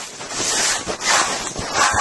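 Steel trowel scraping over sanded Marble Stone Venetian plaster in repeated raspy strokes, about two a second.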